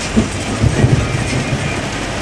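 Heavy rain beating on a vehicle's roof and windshield, heard from inside the cabin together with engine and road rumble, with a few low thumps between about half a second and one second in.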